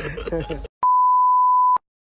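A censor bleep: one steady, high, pure beep lasting about a second, with the sound cut to dead silence just before and after it, masking a word in the men's talk. Speech runs up to it.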